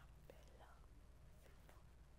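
Near silence: a faint steady low hum with a few faint soft clicks.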